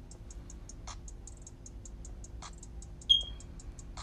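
Fast, even, high-pitched ticking, about five a second, typical of a calling insect, with one loud, sharp falling chirp about three seconds in.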